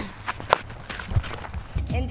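Footsteps and scuffing on dry dirt ground: a handful of separate sharp steps. Music starts just before the end.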